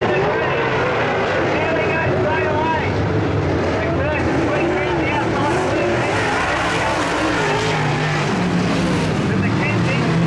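Several dirt late model race cars' V8 engines running around the track, their pitch rising and falling as they rev, with voices nearby.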